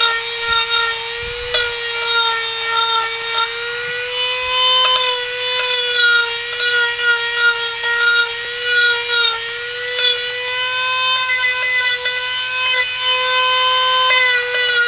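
Dremel rotary tool running at high speed with a sanding attachment, rounding down carved wood. A steady high whine whose pitch wavers slightly as the tool bears on the wood.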